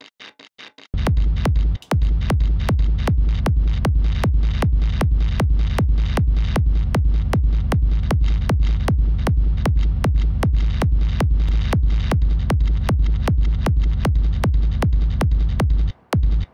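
A distorted hardstyle gated kick with a deep rumbling low end, looped and chopped into a fast even pulse by sidechain ducking. It comes in loud about a second in after a few faint ticks, drops out briefly near two seconds, and cuts off at the end.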